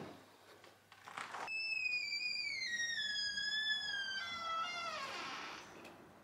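A balcony door being opened: its handle clicks, then a long, high squealing whistle slides slowly down in pitch as the door swings open, dropping lower just before it stops.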